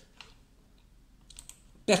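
Near silence with a few faint clicks, then a man begins speaking just before the end.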